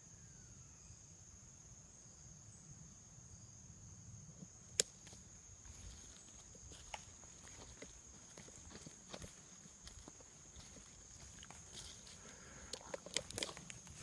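Quiet woodland sound: a steady, thin, high insect drone of crickets, with scattered crackles and clicks of someone moving through dry leaves. One sharp click stands out about five seconds in, and a cluster of clicks comes near the end.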